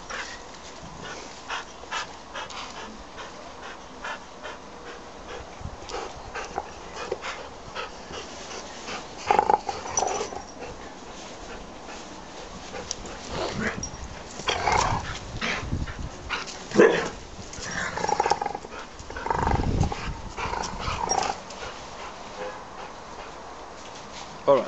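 Dog vocalising in short bursts, a few louder ones about ten seconds in and again through the second half, over small clicks and rustles, with a couple of dull thumps.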